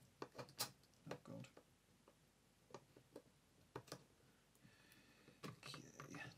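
Faint scattered clicks and taps of a plastic four-AA battery holder and its wires being handled by hand, with a soft rustle near the end.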